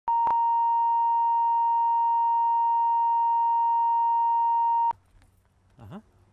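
Steady 1 kHz line-up tone, the reference tone laid down with colour bars at the head of a videotape for setting audio levels. It runs about five seconds and cuts off sharply, leaving faint outdoor background with a brief rising sound near the end.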